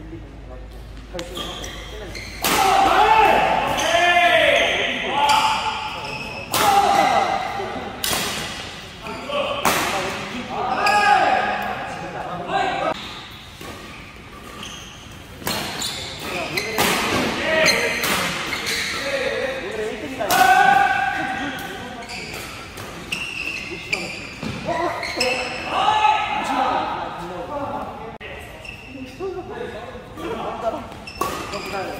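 Badminton doubles rallies: sharp repeated smacks of rackets striking the shuttlecock, with court shoes squeaking on the mat as the players lunge and turn.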